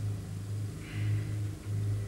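A low steady hum that pulses evenly, a little under twice a second.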